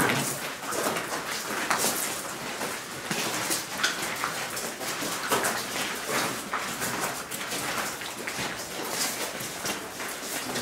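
Footsteps of several people crunching and scuffing on a gravel floor, in an irregular run of short crunches.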